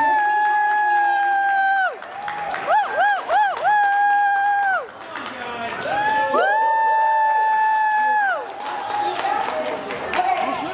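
High-pitched voices holding long 'woo' calls in front of a crowd: one long held call with a rise at the start and a drop at the end, three short rising-and-falling whoops, another long call, then two voices holding overlapping calls at slightly different pitches.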